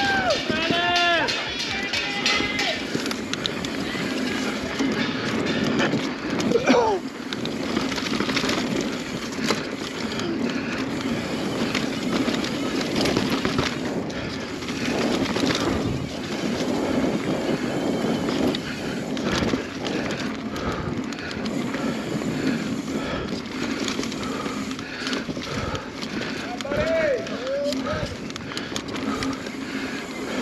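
A mountain bike ridden fast down dirt singletrack: steady rolling noise with frequent knocks and rattles as it goes over bumps and roots, heard from a camera mounted on the bike or rider.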